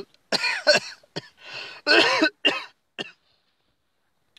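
A man coughing: a run of short coughs over the first three seconds, with brief gaps between them.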